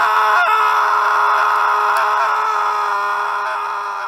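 A preloaded sound effect played from an ALABS FX Caster podcast console's sampler pad through its micro SD card. It is one long held note at a steady pitch that starts abruptly and fades slowly over about five seconds.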